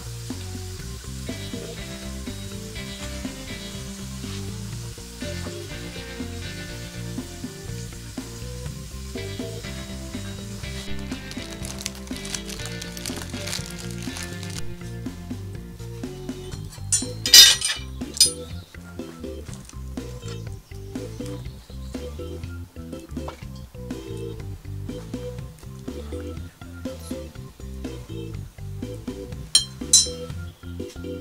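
Potato slices deep-frying in hot fat in a cast-iron pot, sizzling, under steady background music. The sizzle is strongest in the first third, and a short, loud clatter comes about halfway through.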